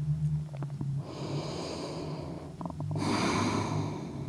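A woman's breathing picked up close on a clip-on wireless mic while she holds a seated forward fold: two audible breaths, the second louder about three seconds in, over a steady low hum.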